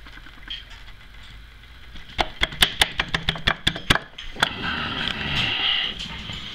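A quick run of sharp metallic clicks, about a dozen in under two seconds, as a motorcycle swing arm pivot pin is worked by hand into its bore. A rustle of handling follows.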